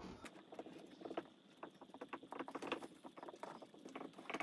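Dry-erase marker writing on a whiteboard: faint, quick, irregular scratches and taps of the felt tip as a line of handwriting goes down.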